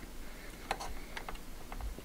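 A few light plastic clicks as the stock CPU cooler fan's cable connector is worked loose from its motherboard header.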